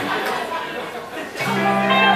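A guitar sounds a chord about one and a half seconds in and lets it ring, a sustained, steady note stack as the band starts into a song.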